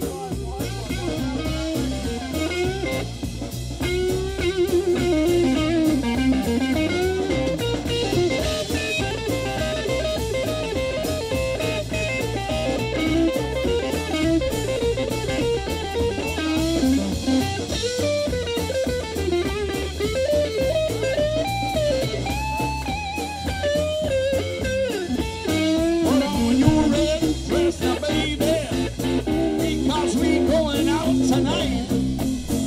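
Live blues band playing an instrumental passage: hollow-body electric guitar, upright double bass and drum kit, with a bending lead line over a steady beat.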